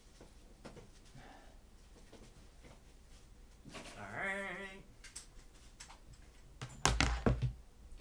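Quiet room tone with a short wavering, pitched sound about four seconds in, then a cluster of sharp knocks and thumps near the end, the loudest part.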